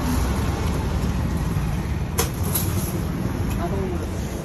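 Steady low rumble of a nearby vehicle engine running, with a couple of sharp clicks or knocks about halfway through.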